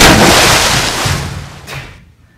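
A large body of water thrown through the air and splashing down, loud and sudden at first, then fading away over about a second and a half.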